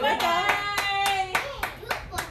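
A small group of people clapping their hands in a steady beat, about three claps a second, with voices singing along over it.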